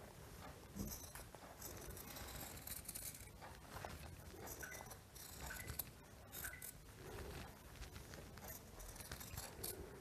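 Dressmaker's scissors snipping through folded cotton cloth in a series of short, faint cuts, shaping scallops along the strip's edge.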